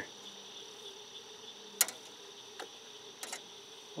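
Steady chorus of crickets chirring at night, with a few brief sharp clicks, the loudest a little under two seconds in.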